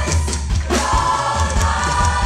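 A large mass gospel choir singing held chords, backed by a live band with drum kit and keyboard.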